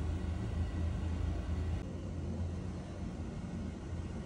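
Steady low hum of indoor ventilation, its higher hiss changing abruptly about two seconds in.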